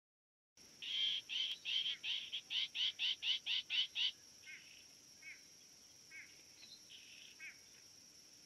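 A bird calling a rapid series of about a dozen loud, short downslurred notes, about three or four a second, which stops about four seconds in. A few fainter single notes follow, over a steady high-pitched insect drone.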